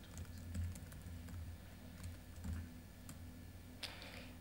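Typing on a MacBook Pro laptop keyboard: a run of faint, irregular key clicks as a command is typed, then one louder keystroke near the end as it is entered.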